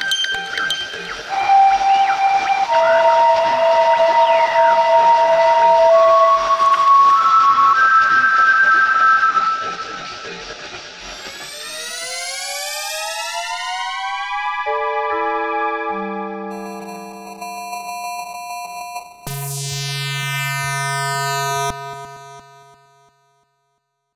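Analog synthesizer music: held tones stepping upward in pitch, then several tones gliding upward together about twelve seconds in and settling into sustained chords. A low buzzy tone enters near the end before everything fades out.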